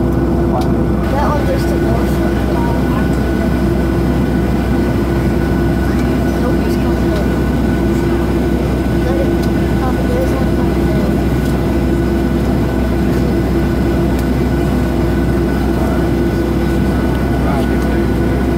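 Cabin noise of a jet airliner taxiing: the engines at low thrust give a steady low rumble with a constant hum over it, unchanging throughout.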